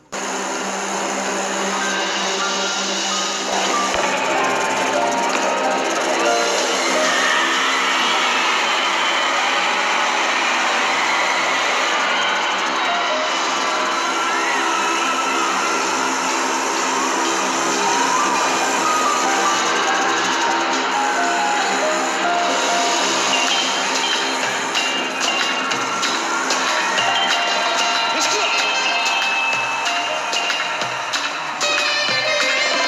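A large arena crowd screaming and cheering over music with long held notes. The sound is loud and steady throughout.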